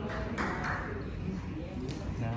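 Indistinct voices in a busy room, with a few light clicks.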